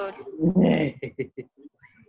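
A woman laughing over a video-call connection: one loud burst, then a quick run of short breathy pulses that trails off.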